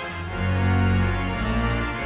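Church organ playing full chords over sustained low pedal notes, swelling louder in the middle.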